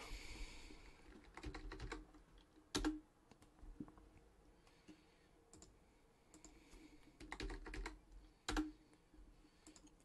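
Faint typing and clicks on a computer keyboard in short bursts: a cluster about a second in, a single sharper click near three seconds, and another run of keystrokes between about seven and nine seconds.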